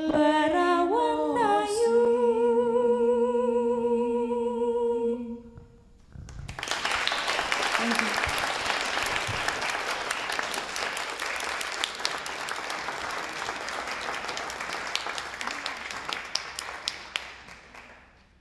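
Two women's voices singing unaccompanied in harmony, ending on a long held two-note chord about five seconds in. After a brief pause, an audience applauds for about eleven seconds, the clapping fading out near the end.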